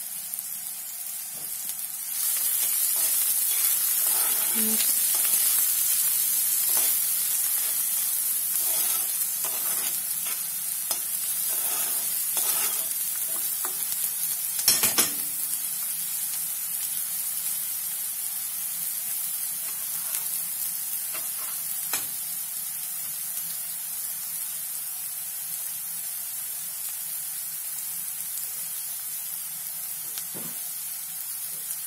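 Diced onion sizzling in hot oil in a frying pan, stirred with a spoon. The sizzle grows louder about two seconds in, with spoon scrapes and a couple of sharp clicks against the pan around the middle, then slowly dies down.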